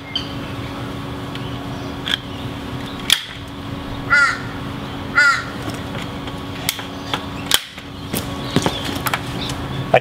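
A crow cawing twice, about a second apart, near the middle, over several sharp clicks of a hand staple gun fastening the deer hide to a wooden frame. A steady low hum runs underneath.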